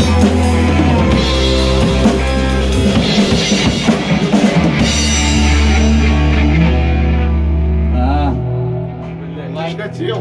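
A rock band playing live in a rehearsal room: drum kit with cymbals, electric guitars and bass guitar. About eight and a half seconds in the full band drops out, leaving quieter ringing notes as the song ends.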